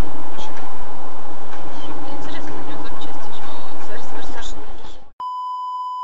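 A loud, harsh, distorted noise that cuts off about five seconds in, followed by a steady electronic beep lasting about a second.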